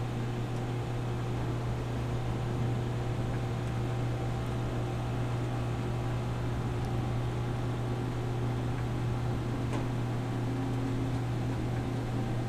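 Steady low hum with an even hiss from a human centrifuge running while the G load builds slowly. The hum holds one pitch throughout.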